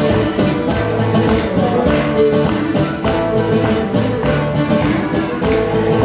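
Live Cretan folk music played as an instrumental passage with no singing: a bowed Cretan lyra carries the melody over strummed laouto-style plucked strings and an electric bass.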